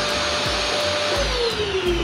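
Vacuum cleaner running: air rushing through the hose under a steady motor whine. Just past a second in, the whine starts to fall steadily in pitch as the motor winds down.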